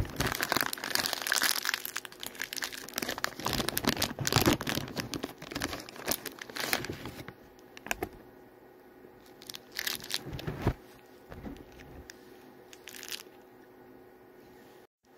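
Plastic snack bag of Stuffed Puffs marshmallows crinkling and being torn open, in a dense run over the first seven seconds, then a few shorter crinkles.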